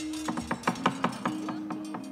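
Javanese gamelan accompaniment to a wayang kulit performance, playing a quick run of struck notes over a held tone.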